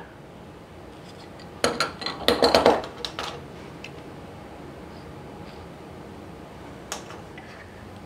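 Light clinks and scrapes as a brass wheel marking gauge is handled and run across a small piece of wood: a cluster of short sounds about two seconds in and a single click near the end.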